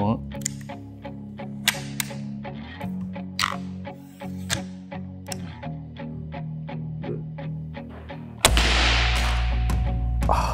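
Background music with a steady low drone and a regular ticking beat, then, about eight and a half seconds in, a compound crossbow is fired: a sudden loud burst followed by a sustained low rumble.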